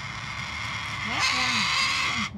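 A person's voice murmuring low in the second half, over a steady high hiss.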